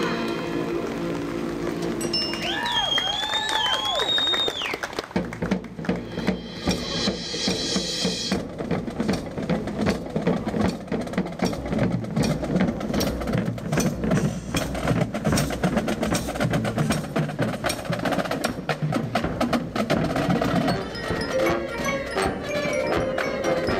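Marching band: a held brass and wind chord fades away with a brief wavering solo line over it. About five seconds in, the drumline takes over with rapid snare drum patterns, rolls and bass drum hits, and the front ensemble's mallet percussion joins near the end.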